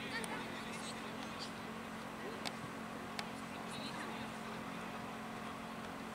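Youth football match on the pitch: faint shouts from the players and two sharp kicks of the ball, about two and a half and three seconds in, over a steady low hum.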